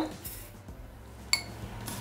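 Sugar poured from a small glass into a Thermomix's stainless steel mixing bowl with a faint hiss, then one sharp, ringing glass clink a little over a second in.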